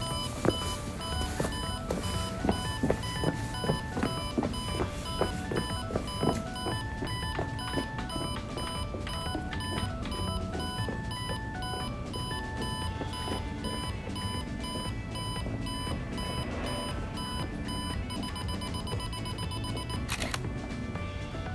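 Electronic beeping of a Nikon D5600's self-timer counting down, a high beep repeated at short, even intervals, over background music.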